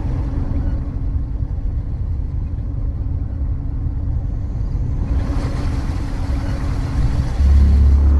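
Steady low rumble of a car driving, heard from inside the cabin. About five seconds in a hiss rises over it, and near the end a much louder deep low sound comes in.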